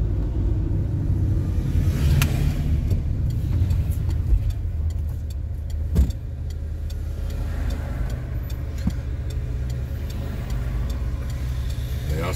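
Inside a moving car at low speed: steady low engine and road rumble, with a sharp thump about six seconds in.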